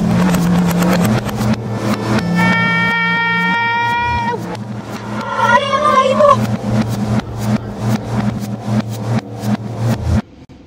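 Heavily effect-processed, distorted audio: a steady low buzz with rapid clicking, a held tone with overtones from about two to four seconds in, and a warbling, distorted shout of 'Hold the elevator!' around five to six seconds in.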